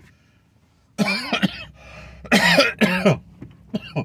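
A man coughing in harsh bouts: a couple of coughs about a second in, a louder run of coughs a little past two seconds, and a short one near the end.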